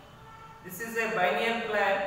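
A man's voice speaking, after a brief pause at the start.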